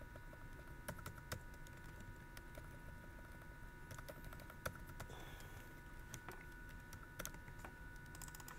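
Faint computer keyboard typing: scattered, irregular key presses while an equation is being entered. A faint steady high hum sits underneath.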